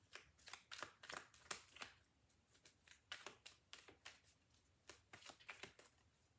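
Tarot cards being shuffled by hand, faintly: an irregular run of soft, short flicks and clicks, a few each second.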